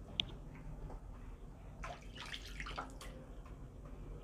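Light handling noise as hands work a piece of cotton fabric and a cloth tape measure: one short sharp tick just after the start, then a brief run of soft rustles and clicks around the middle, over a low steady hum.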